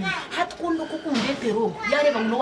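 A woman speaking in a raised voice that is higher in pitch than just before, with a short hissy sound a little past one second in.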